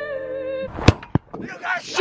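Background music cuts off less than a second in, followed by a loud sharp knock and a second, smaller knock; then excited shouting begins near the end.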